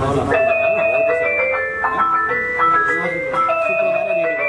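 Handheld megaphone playing its built-in electronic jingle, a simple tune of clean beeping notes stepping up and down in pitch, which starts again near the end as its buttons are pressed.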